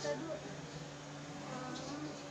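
A steady, low buzzing hum, with faint voices briefly at the start and again near the end.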